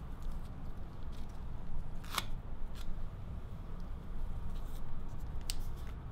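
Adhesive tape being handled and applied: a few short sharp snaps over a low steady room hum, the loudest about two seconds in and another sharp one near the end.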